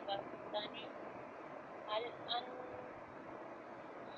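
Faint, broken speech, a few short syllables, over a steady background hiss.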